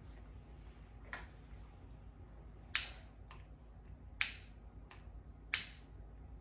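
A lighter being clicked several times to light a candle: a series of sharp, separate clicks, the louder ones about a second and a half apart.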